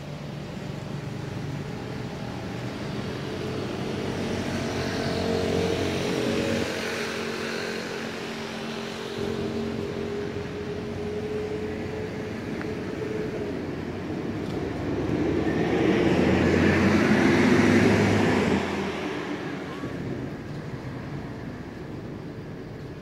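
Motor vehicles passing on a nearby road: a steady engine hum swells and fades in the first half, then a second, louder vehicle passes about three quarters of the way through and fades away.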